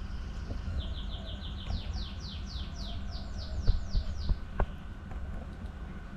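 A songbird singing a fast run of repeated high, falling whistled notes, about five a second, starting about a second in and lasting about three and a half seconds. Near the end come a couple of small sharp clicks.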